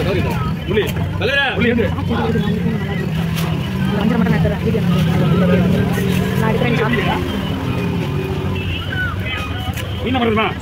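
Voices talking over a steady low hum, with a few sharp knocks of a heavy knife chopping fish on a wooden block.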